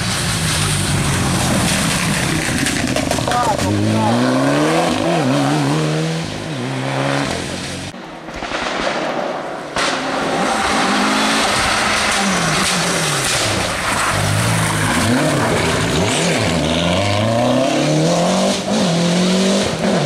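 Rally cars passing at speed one after another, their engines revving up and falling back again and again through gear changes and lifts for the bends. The sound dips briefly about eight seconds in between cars.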